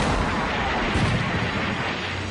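Towed howitzer firing: two heavy blasts about a second apart, each followed by a long rumble.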